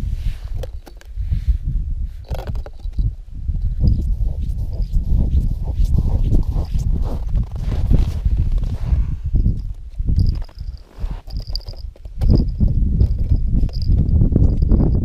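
Wind buffeting the microphone with a dense, gusting rumble, mixed with crunching snow and handling noise as a tip-up is set over an ice-fishing hole. A faint, thin high chirp comes and goes near the end.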